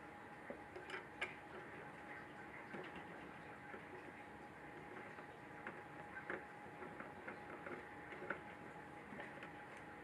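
Faint, scattered clicks and taps of a screwdriver working the small recessed Torx screws on the back of a 3D printer's metal electronics case, over a faint steady hum.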